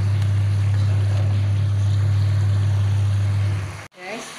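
A loud, steady low hum over the fainter sizzle and bubbling of chili sambal cooking in a pan. The hum cuts off abruptly near the end.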